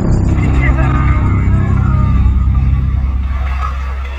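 Trailer sound design: a deep, steady low rumble with a wavering, voice-like sound above it, easing off slightly near the end.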